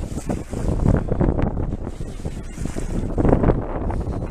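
Wind buffeting the microphone in irregular gusts, over water washing along the hull of a boat at sea.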